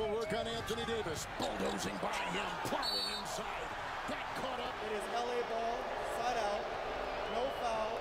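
Basketball game broadcast playing at low volume: arena crowd noise and a commentator's voice, with the ball dribbled on the hardwood in short sharp bounces.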